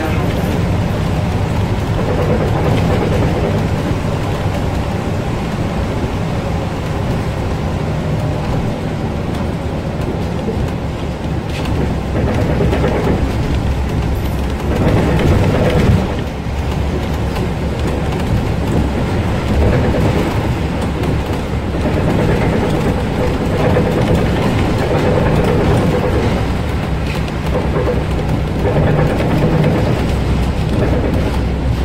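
Cabin sound of a Volvo 7000A articulated city bus under way. The diesel engine and drivetrain run steadily under road and tyre noise on a wet road, swelling louder for a few seconds midway.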